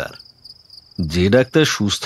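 Crickets chirping in a steady, high-pitched trill as background ambience, with a voice coming in about a second in.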